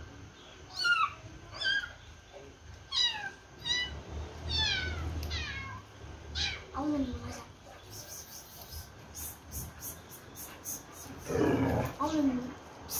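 An animal's short, high-pitched calls, each falling in pitch, about six in quick succession over the first five seconds, followed by a lower drawn-out call about seven seconds in. A louder rough burst of sound comes shortly before the end.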